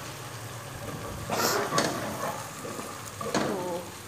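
Food frying in oil in a steel pot on a gas stove, stirred with a wooden spoon. A couple of short, louder scraping strokes come about a second and a half in and again after three seconds.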